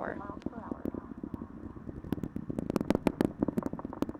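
Space Launch System rocket's low rumble with dense, irregular crackling, its two solid rocket boosters and four RS-25 core stage engines firing during ascent. The crackling grows stronger in the second half.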